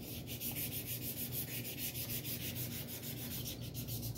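Oiled 1000-grit sandpaper scrubbed rapidly back and forth over a steel sword pommel in quick, even strokes, several a second, rubbing off surface rust.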